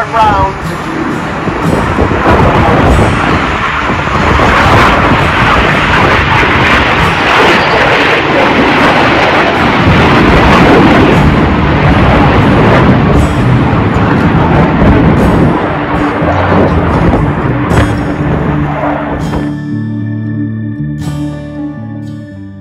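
Jet engines of a display team's formation roaring past overhead, loud throughout and slowly fading over the last part. About two seconds before the end, the roar cuts to gentle guitar music.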